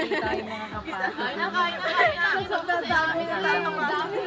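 Several people talking over one another in lively group chatter, with no single voice standing out.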